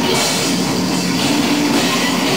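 Live experimental noise-rock band playing: electric guitars and a drum kit in a loud, dense, continuous wall of sound.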